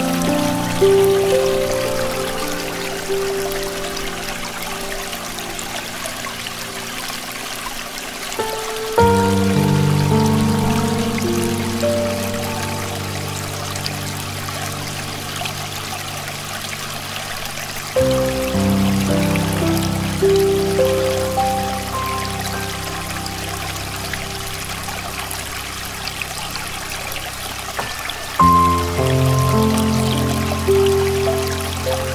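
Slow, soft solo piano music over a steady rush of running stream water. A fuller chord with a deep bass note starts a new phrase three times: about nine seconds in, at about eighteen seconds, and near the end.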